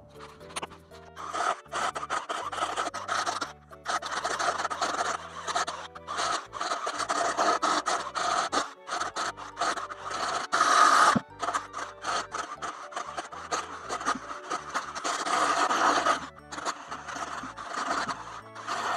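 Background music laid over the stop-start noise of a cordless drill boring into a wooden log, the drilling coming in several runs with short breaks between them.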